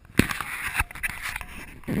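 Handling noise from an action camera being turned over and repositioned by hand: a sharp knock, then rough rubbing and scraping on the camera body, ending in a thump.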